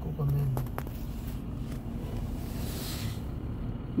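Steady low rumble of traffic and vehicle engines heard from inside a car's cabin, with a brief hiss about three seconds in.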